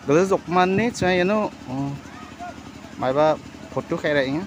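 People talking: speech only, several bursts of voice.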